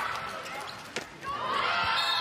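A handball bouncing once on the indoor court floor: a single sharp knock about halfway through, with voices in the hall rising again just after it.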